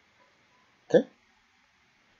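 A man's single short spoken "okay" about a second in, rising in pitch; otherwise near silence.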